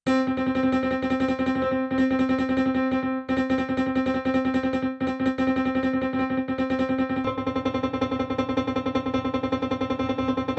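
Hybrid digital piano with a grand piano key action playing one note repeated in a fast tremolo, a demonstration of how quickly the key action repeats. About seven seconds in, the sound changes and a lower, fuller tone joins.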